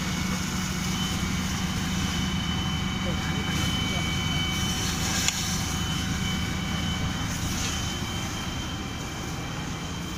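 Steady engine drone with a thin high whine from a fire engine running its pump to feed hoses onto a burning bus, with voices murmuring in the background. A single sharp click about five seconds in.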